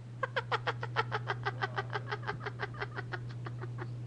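A woman's high-pitched cackling laugh: a fast run of short 'ha' pulses, about seven a second, that tails off and fades near the end.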